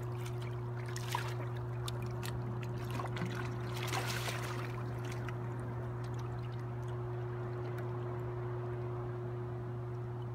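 A hooked white sturgeon thrashing and swirling at the water's surface, with water splashes in the first half, the biggest about four seconds in. A steady low hum runs underneath throughout.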